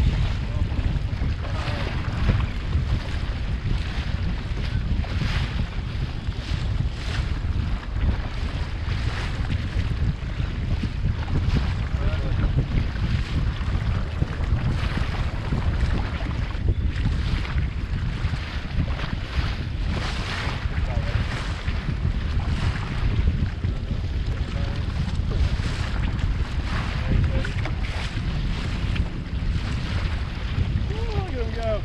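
Wind buffeting the action-camera microphone, with choppy water slapping and splashing against the side of a jet ski and around a redfish held in the water alongside.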